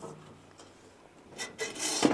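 Aluminium trailer side-board extension panel scraping as it is slid along its metal stake: a short rasping rub that builds over the last half second.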